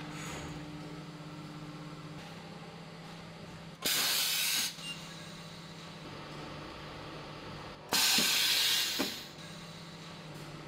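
Pneumatic heat press exhausting compressed air in two loud hissing bursts of about a second each, as its platen comes down near the middle and lifts again near the end, each stroke starting with a sharp click. A steady low machine hum runs underneath.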